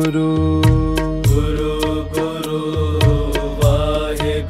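Sikh devotional kirtan music: sustained melodic lines over a steady percussion beat and a pulsing bass.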